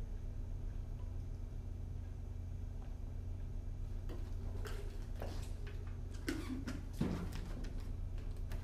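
Steady low hum, with a few short clicks and soft knocks in the second half as a plastic drinks bottle is handled and drunk from.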